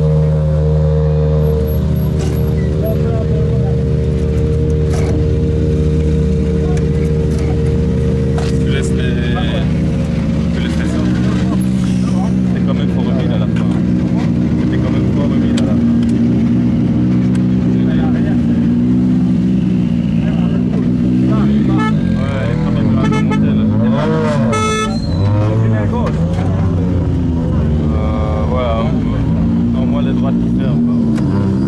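A rally car engine idling steadily, with people talking around it. About 22 seconds in, its pitch rises and falls several times in quick blips.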